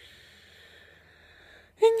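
A person's long, quiet breath drawn in, lasting about a second and a half, followed by the start of speech.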